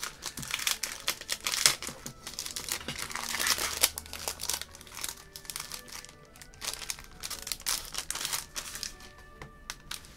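Clear plastic packaging bag crinkling as it is handled and a notebook cover is slid out of it. The crinkling is dense through the first half and thins to scattered crackles later.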